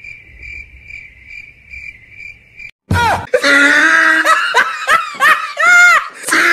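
A faint cricket-chirping sound effect, a steady high chirp, cut off abruptly after about two and a half seconds. About three seconds in, loud high-pitched laughter begins.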